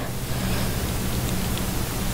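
Steady, even hiss with a faint low hum underneath: the background noise of the recording in a pause between words.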